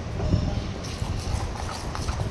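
Steel spoon stirring thick semolina batter in a stainless steel bowl, scraping through the batter with soft irregular knocks against the bowl.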